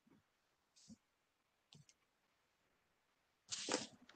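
Near silence over a video call, with a few faint clicks in the first two seconds. A short burst of hiss comes near the end, just before someone starts to speak.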